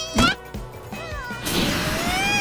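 Cartoon soundtrack: squeaky, gliding character vocalizations and comic sound effects over music, with a sharp hit just after the start and a rushing whoosh near the end.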